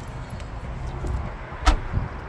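Low wind rumble on the microphone, with one solid thump near the end as a car door is shut.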